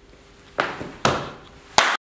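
Three sharp hand claps, spaced about half a second apart, the last one cut off abruptly.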